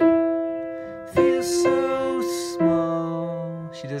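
Piano played slowly, three soft strikes about a second and a quarter apart, each note or double note held down and left to ring and fade. A lower note sounds under the third strike.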